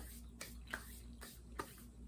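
A person chewing a mouthful of snack cake with lips closed: soft wet chewing with a few sharp mouth clicks and smacks, three in about two seconds, over a faint steady low hum.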